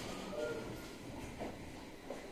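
Quiet running sound heard inside a 701 series electric train car rolling slowly: a faint low rumble, with a brief faint whine about half a second in and a soft knock later on.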